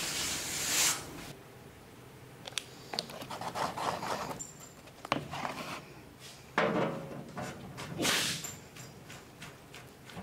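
Handling sounds on a stainless steel tank bottom: hands rubbing and sweeping across the sheet metal and its welded studs, with scattered light clicks and knocks of metal parts being set down. The swishes come in irregular bursts, and the loudest is near the start.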